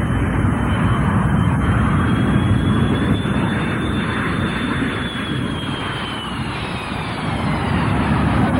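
Jet airliner coming in low over the runway to touch down, its engines loud and steady with a high whine that rises a little, holds, then falls away over the last couple of seconds.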